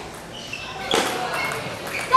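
Table tennis rally in a large hall: a sharp click of the ball being struck about a second in, over faint background voices.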